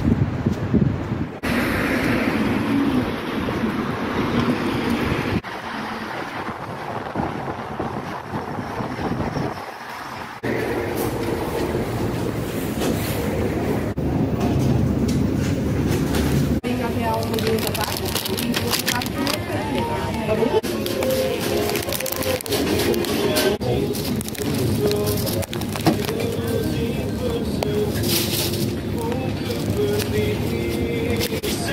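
Indistinct voices of several people talking indoors, through the second half. Before them comes a noisy stretch that changes abruptly several times.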